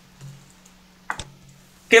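A single sharp click from a computer being operated, about a second in, over a faint low steady hum.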